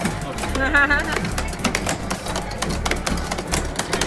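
Busy arcade room sound: music and children's voices, with a wavering high-pitched sound about a second in and a run of quick clicks from arcade game buttons being pressed.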